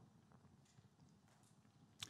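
Near silence: room tone in a lecture pause, with a few faint ticks.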